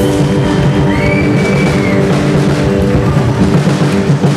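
A live band, amplified, playing a loud rock song with drum kit and guitar. A high held note bends upward about a second in.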